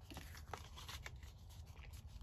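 Faint rustle of paper and card being handled and refolded, with a few light taps.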